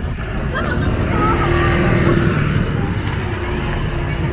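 Street traffic: a motor vehicle engine running as it passes, growing louder to a peak about two seconds in, with a few brief voices over it.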